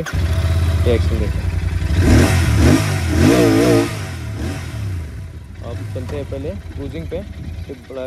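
Royal Enfield Continental GT 650's parallel-twin engine, fed through twin silencers, starting on the electric starter and catching at once. It is then revved, loudest between about two and four seconds in, before easing back towards idle.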